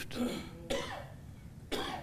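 A single short human cough about two-thirds of a second in, then a quick intake of breath near the end.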